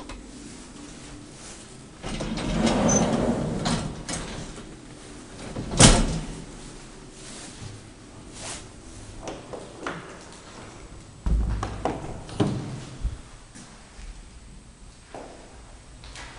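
Elevator doors of an antique Luth & Rosén lift modernised by KONE being worked: a sliding rumble about two seconds in, then a sharp latch click near six seconds, the loudest moment. Scattered clicks and a few thumps follow in the second half.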